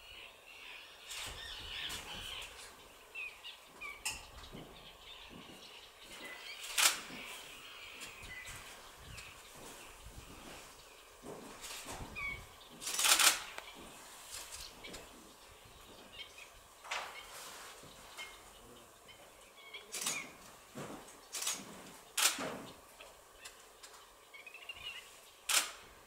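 Faint small-bird chirps come and go, with about ten short, sharp noisy bursts at irregular intervals. The loudest burst comes about 13 seconds in.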